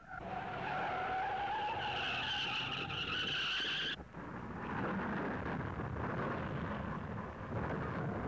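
Race car tyres squealing in a long skid, a screech that climbs slightly in pitch for about four seconds and then cuts off suddenly: the car has lost control and is sliding. A steady rough noise follows.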